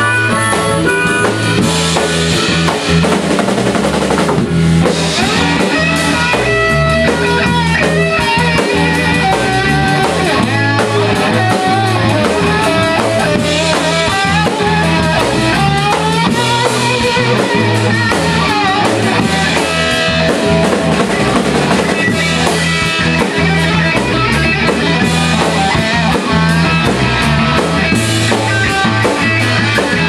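Live blues-rock trio playing an instrumental passage: electric guitar over bass guitar and a drum kit, with bending guitar notes in the middle of the passage.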